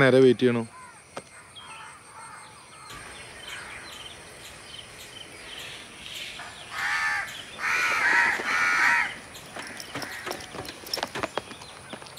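A crow cawing three times in quick succession, a little past the middle, over faint outdoor ambience.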